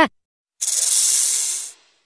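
A steady hiss about a second long, standing in as the house gecko's (cicak) animal sound. It starts half a second in and cuts off abruptly.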